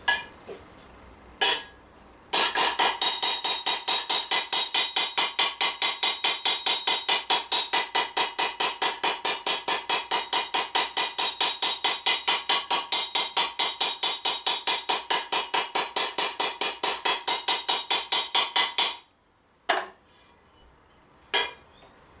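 Rapid, even hammer blows, about five a second, of a rounded-face scutching hammer planishing a metal armour plate from the inside over a steel T-bar stake, each strike ringing like metal. These are small blows that smooth out dents in the curve. A couple of single taps come before the long run starts a couple of seconds in, and one more comes near the end, after it stops.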